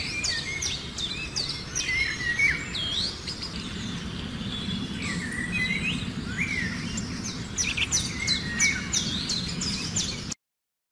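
Birds chirping and calling: many short chirps and quick rising and falling whistles over a steady low background hum, with a burst of rapid chirps near the end.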